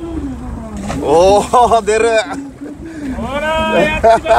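Voices calling out on a fishing boat, loudest from about one to two seconds in, over a steady low rumble of the boat at sea.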